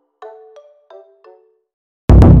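A short four-note chime jingle, like a bell or glockenspiel sound effect. Its notes are struck about a third of a second apart, and each rings briefly and dies away.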